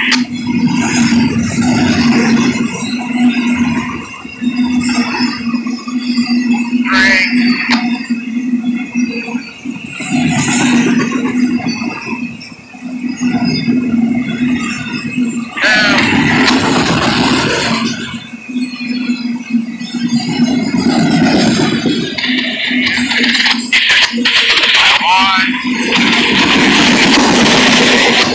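Freight train of autorack cars rolling past close by: a steady rolling rumble and hum, with brief high wavering squeals every several seconds.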